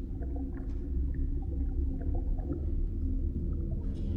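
Underwater soundscape for a stage play: a steady deep rumble with scattered short, high chirps and blips, like distant sea-creature calls. It ends on a sharp struck hit.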